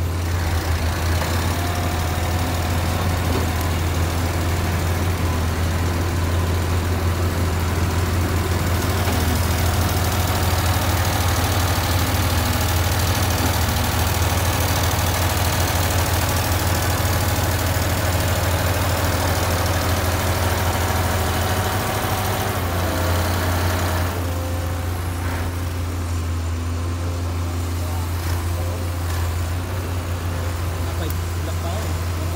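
A heavy vehicle's diesel engine running steadily with a deep, even hum, its noise fuller for most of the time and easing off about 24 seconds in.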